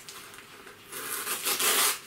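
Packaging rustling and scraping as goods are worked out of a tightly packed parcel by hand. It grows much louder about a second in.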